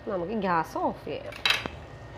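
A woman's voice for about the first second, then a single sharp clink of kitchenware about a second and a half in.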